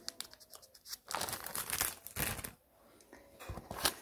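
Clear plastic packaging crinkling and rustling as it is handled, in a few irregular spells, loudest from about a second in until about two and a half seconds in.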